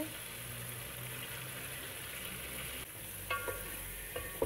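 Potato and aubergine pieces sizzling steadily in oil and masala in a steel pot while being stirred with a wooden spoon, with a short squeaky scrape a little after three seconds in.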